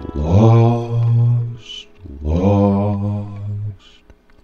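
Devotional song: a deep voice sings two long, low held notes in a chant-like style over steady instrumental backing, with a short hiss between the notes.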